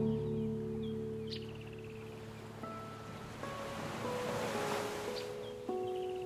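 Soft classical guitar, a few held notes ringing and fading, over gentle ocean waves. A wave swells and washes in about halfway through, then new guitar notes come in near the end.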